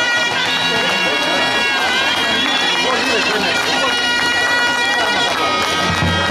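Zurna (folk shawm) playing a folk melody in long held notes that slide from one pitch to the next, without drum beats, while people talk underneath.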